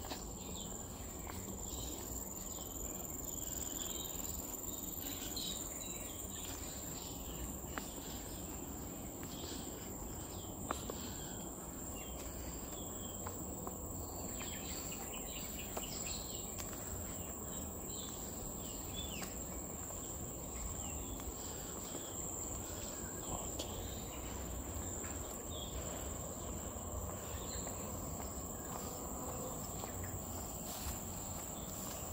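Insects droning continuously in thick vegetation, one steady high-pitched tone that holds without a break, over a low outdoor background rumble.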